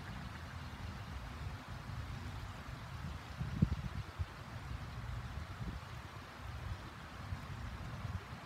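River water running over rocks, a steady rush, with low wind rumble on the microphone. A brief knock sounds about three and a half seconds in.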